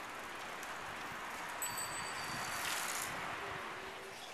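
Street ambience: a steady hiss of traffic, with a brief high ringing tone about a second and a half in and a short swell of noise just before three seconds.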